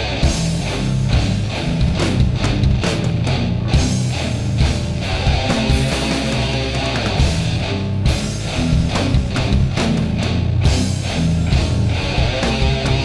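Heavy rock band playing an instrumental passage: distorted electric guitars, bass and drums with steady cymbal and snare hits.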